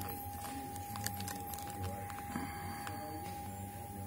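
Light handling noise from a cardboard-and-plastic retail package turned in the hand, with a few faint clicks, over a steady low hum and a constant high-pitched tone.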